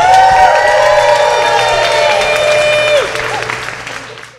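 Audience applauding and cheering, with several voices holding long whoops together for about three seconds over the clapping, which then fades away.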